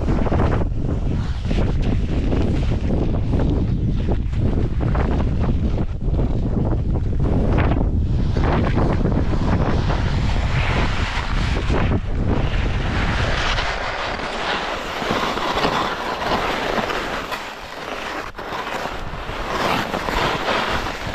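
Wind buffeting the camera microphone of a skier descending a steep snow chute, mixed with the hiss and scrape of skis sliding over packed snow. The low wind rumble eases about two-thirds of the way through, leaving mostly the scraping hiss of the skis.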